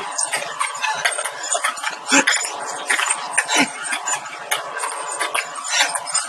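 A table tennis ball clicking sharply and irregularly as it bounces on the table and is batted back, with voices in the background.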